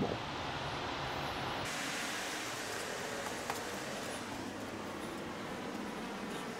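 Steady background hiss with no distinct source. About a second and a half in it turns brighter and thinner as the indoor room tone gives way to open air outside. One faint tick comes about halfway through.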